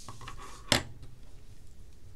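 Desk handling noise as a plastic ruler and pen are set down on a sheet of paper: a soft rustle, then one sharp click a little under a second in.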